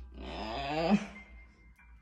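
A woman's breathy, drawn-out "ooh" of wonder, rising in pitch and growing louder for about a second before stopping.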